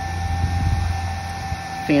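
Small 24-volt DC cooling fan running: a steady hum with a thin, steady whine.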